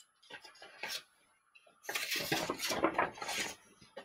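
Page of a hardcover picture book being turned: a few short paper rustles in the first second, then a longer crinkly rustle of about a second and a half.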